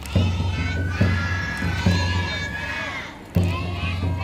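Young children shouting festival calls over beats of a taiko drum and a high held flute line: the accompaniment of a shishimai lion dance. The sound dips briefly about three seconds in, then a loud drum beat comes back.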